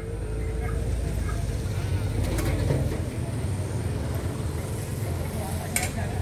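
A large vehicle's engine idling steadily close by, a low, even rumble, with people talking in the background.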